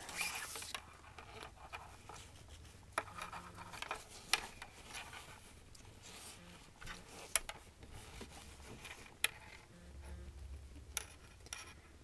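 Nylon paracord rubbing and zipping against itself as a strand is threaded through a loop and pulled tight by hand in a cobra weave knot, with a few sharp small clicks scattered through.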